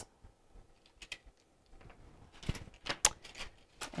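Faint clicks and rustling from handling small jewelry cards in plastic packaging, with a few sharper clicks about two and a half to three seconds in.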